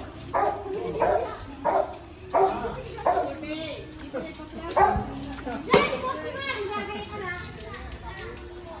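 A dog barking repeatedly, a little under two barks a second, through the first half. A single sharp crack comes a little after the middle, then voices.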